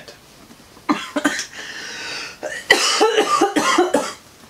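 A person laughing: a few short breathy bursts about a second in, then a quick run of rapid laughing pulses in the second half.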